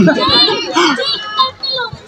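Lively young voices shouting and talking close by, loud for about a second and a half and then dropping away.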